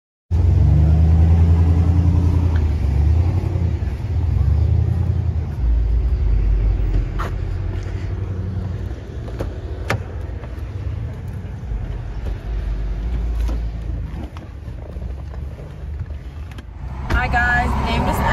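Loud low rumble around a car, with a few sharp clicks and knocks as the driver's door is opened and someone gets in. A woman starts speaking near the end.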